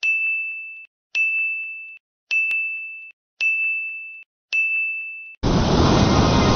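Five identical electronic ding tones, evenly spaced about a second apart, each a single high steady note that fades slightly before cutting off. Near the end a loud, dense full-range sound comes in.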